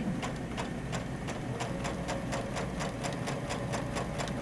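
Baby Lock Crescendo computerized sewing machine stitching a straight seam at an even speed: a rapid, steady beat of needle strokes over a faint motor hum.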